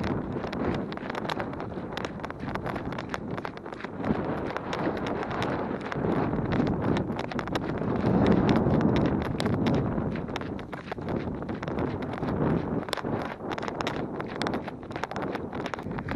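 Running footsteps striking and crunching on a gravel trail, a steady series of short impacts, with wind buffeting the microphone.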